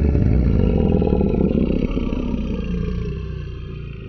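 A dinosaur roar sound effect: one long, deep roar that is loudest at first, then slowly fades from about halfway through.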